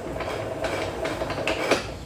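Steady background noise with a faint constant hum.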